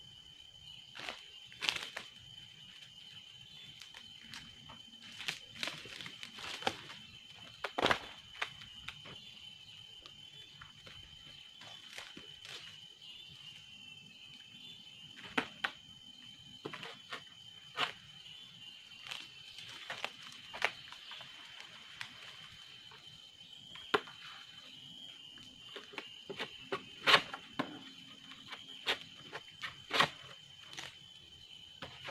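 A steady high-pitched insect drone, with scattered sharp clicks and knocks coming at irregular intervals, the loudest about 8 seconds in and near the end.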